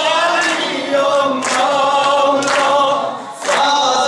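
Maddahi, Persian-style Shia devotional singing: a group of voices sings unaccompanied in long, wavering phrases, with a sharp beat about once a second. The singing dips briefly near the end between phrases.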